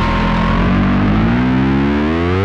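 Distorted electric bass through a DigiTech Bass Whammy pitch-shifting pedal: one held note whose pitch starts to slide smoothly upward about halfway through as the expression treadle is pushed.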